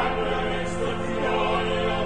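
Church choir singing a hymn over steady held organ chords.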